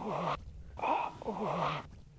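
A woman's voice, worked on magnetic tape in a futurist sound-poetry piece. A short vocal fragment with a low, wavering pitch repeats about every second and a half, with brief gaps between the repeats.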